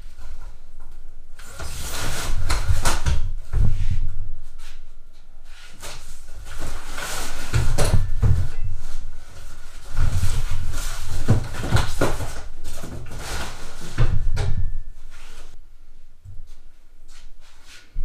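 Cardboard box and foam packing rustling and scraping in irregular spells while a heavy steel three-ton low-profile floor jack is worked out of its box, with dull thumps and knocks as the jack is shifted and set down.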